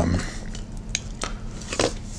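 Fountain pen nib on paper while writing an equals sign: a few light, sharp clicks and taps spaced irregularly through the moment.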